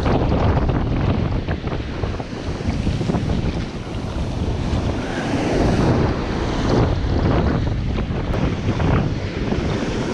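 Wind buffeting the camera microphone with a low rumble, over ocean surf breaking and washing up the sand, the sound surging and easing.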